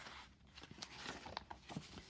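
Quiet room tone with a few faint, soft clicks and rustles, like small handling noises.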